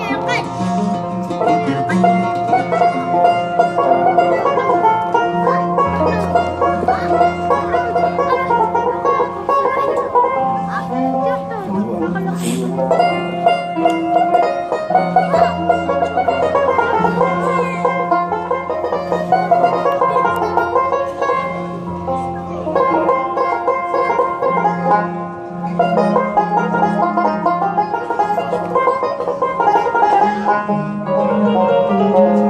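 Live Algerian chaâbi ensemble playing an instrumental passage between sung verses. Busy plucked banjo and mandole melody lines run over long held low bass notes.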